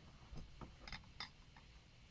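Near silence with a few faint, short ticks as fingers handle twine, placing its ends around a handle.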